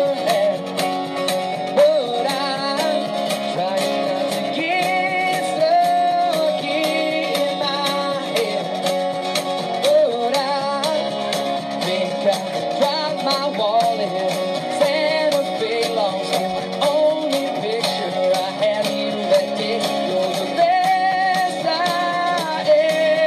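Live acoustic band music: a strummed acoustic guitar and a drum and cymbal played by hand and stick keep a steady beat under a wavering melody line.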